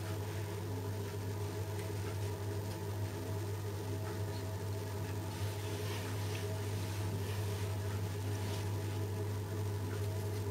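A steady low electrical hum runs throughout, with faint light taps and rustles of hands handling the food now and then.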